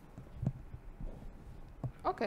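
Two soft, low thuds of handling noise, one about half a second in and one near the end, the last as a whiteboard eraser is set down on the board's ledge.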